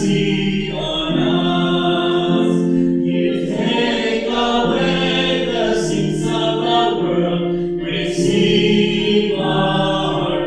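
Church choir singing a hymn in long held notes, with brief pauses between phrases about three and eight seconds in.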